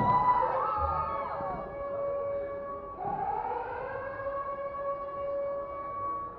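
Siren-like effect in a performance soundtrack played over stage speakers: long held tones sliding up and down in pitch, with a new tone rising in about three seconds in and holding.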